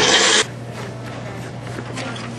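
Small countertop blender pulsing once, a loud burst of about half a second, blending soaked sun-dried tomatoes and marinade into a thick sauce.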